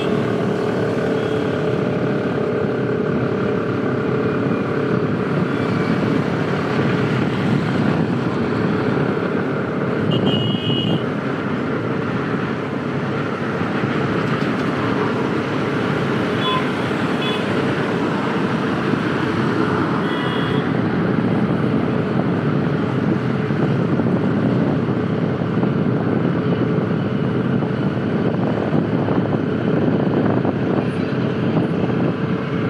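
Motorcycle riding along a city road: steady engine and road noise with passing traffic, and a few short horn beeps about ten, sixteen and twenty seconds in.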